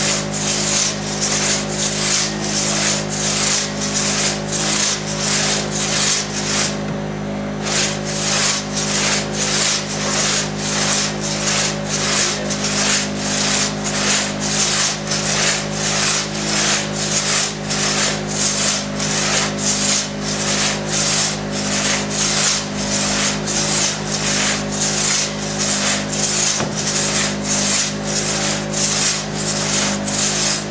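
Long one-man crosscut saw being pulled and pushed rapidly through a thick log: loud rasping strokes, about two a second, with a brief break about seven seconds in.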